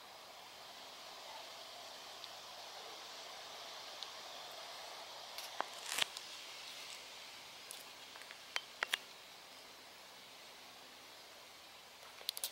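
Faint outdoor background: a steady soft hiss with a few short clicks and rustles, the sharpest about six seconds in and a quick pair about nine seconds in.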